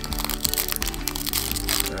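Crinkling and crackling of a foil trading-card booster pack being handled and torn open, over steady background music.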